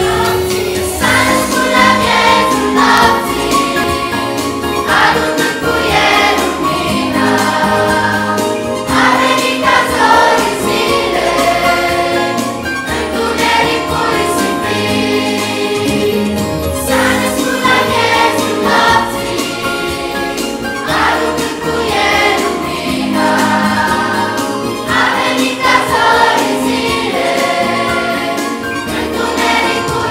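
Children's choir singing a Romanian Christmas carol (colind) over a backing with steady low bass notes.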